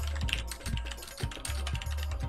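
Typing on a computer keyboard: a quick, uneven run of keystrokes, several a second.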